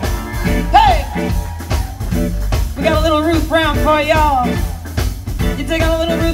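Live blues band playing an instrumental passage: a lead line of bent, sliding notes over bass and drums.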